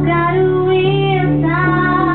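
A woman singing to her own piano accompaniment. Held sung notes with vibrato lie over sustained chords, with a short break in the voice about a second and a half in before the next phrase.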